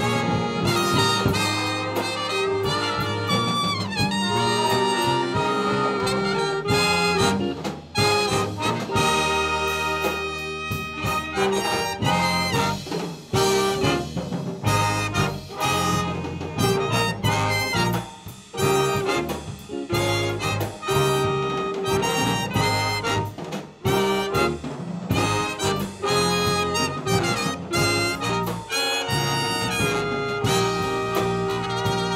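Live big band playing a jazz tune: trumpets, trombones and saxophones with a drum kit and rhythm section. The ensemble drops away briefly a few times.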